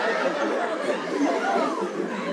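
Audience laughing and chattering in many overlapping voices.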